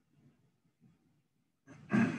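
Near silence with only a faint low room murmur, then a man's voice starting near the end.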